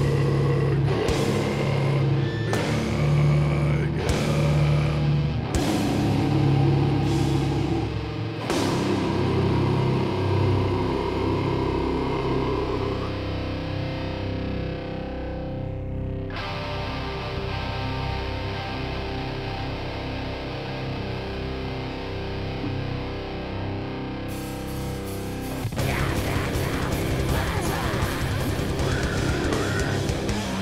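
Metalcore band playing live with distorted electric guitars and drums. The loud full-band section gives way after about eight seconds to a quieter stretch of held notes, and the full band comes crashing back in about four seconds before the end.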